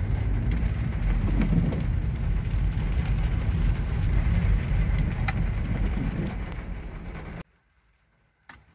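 Inside a car driving in heavy rain: a steady low engine and road rumble with rain drumming on the roof and windshield, and a few faint ticks. It fades slightly and then cuts off abruptly near the end.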